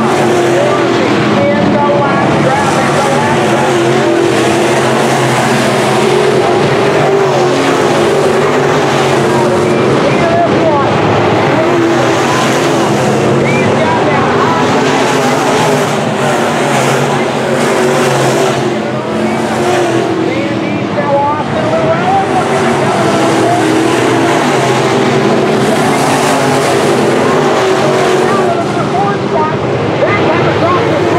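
A pack of IMCA Sport Mod dirt-track race cars running laps, their V8 engines at racing speed blending into one loud, steady drone that swells and fades slightly as cars pass.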